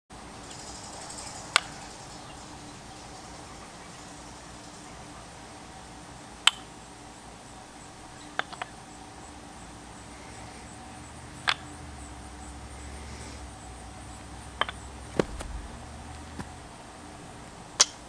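Wooden kendama clacking as the ball knocks against the cups and spike during trick attempts: about eight sharp single clacks a few seconds apart, two in quick succession near the middle, over a faint steady background hum.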